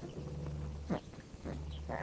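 Newborn South China tiger cub giving a short, sharp cry about a second in, with a fainter call near the end. A low steady hum comes and goes underneath.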